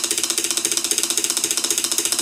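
Wooden drumsticks beating a fast drum roll on an aluminium injection mold plate: even strokes, about a dozen a second, over a steady metallic ring.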